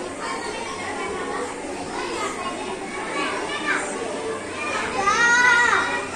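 A group of young children chattering over one another, with one high voice louder and longer near the end.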